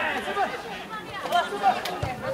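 Unclear voices of players and onlookers calling out on a football pitch, with a couple of short sharp knocks near the end.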